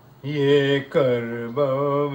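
A man chanting an Urdu Muharram elegy unaccompanied into a microphone, in long held notes with a slight waver. After a short pause at the start he sings two drawn-out phrases, with a brief drop between them about a second in.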